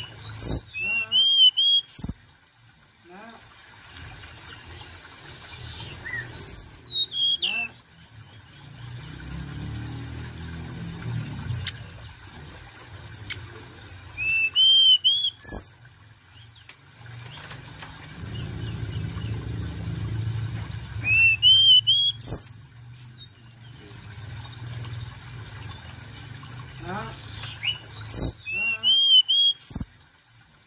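Hill blue flycatcher singing: five short phrases of high, quick whistled notes that slide up and down, each phrase about a second and a half long and coming roughly every seven seconds. A low rumble fills the gaps between phrases.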